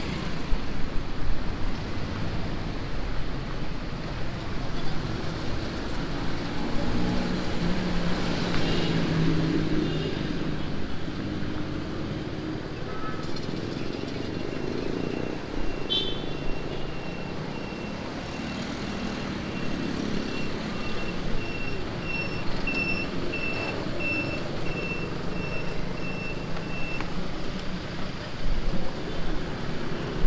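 Road traffic passing close by, with engines and tyres swelling and fading as cars and a bus go past. From about halfway in, a vehicle's warning beeper sounds in an even run of short high beeps for around thirteen seconds, then stops.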